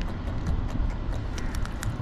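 Steady low rumble of wind on the microphone, with scattered light clicks and taps from handling the fishing tackle and the hooked fish.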